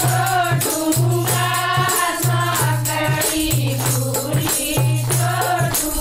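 Women singing a Haryanvi folk song (lokgeet) together over a steady, rhythmic percussion accompaniment.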